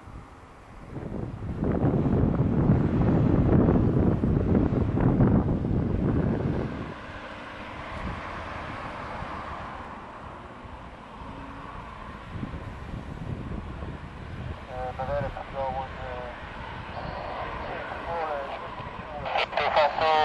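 A loud low rumble for about six seconds, then the quieter, steady whine of a Boeing 737-800's CFM56 jet engines as the airliner taxis. Faint voices come in near the end.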